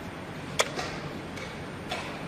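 Sharp clicks of a blitz chess move over steady room noise: a wooden chess piece is set down on the board and the chess clock is pressed. The loud click comes about half a second in, and a softer one comes near the end.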